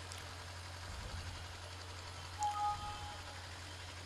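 Pause in an amplified speech: steady low electrical hum and faint hiss from the sound system, with one brief, faint pitched tone about two and a half seconds in.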